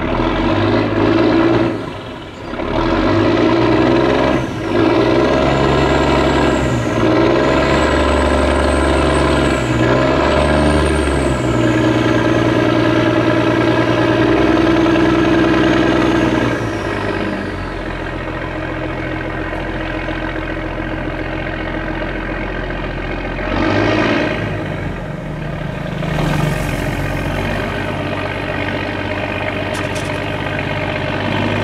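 Boat engine running hard at high throttle, its pitch shifting up and down with a faint high whine over it. After about seventeen seconds it settles into a steadier, lower run, with a short swell in loudness near the middle of the second half.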